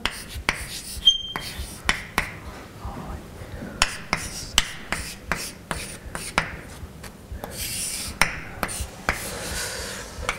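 Chalk writing on a blackboard: irregular sharp taps of the chalk against the board with short scratchy strokes between them, a longer scraping stroke about eight seconds in.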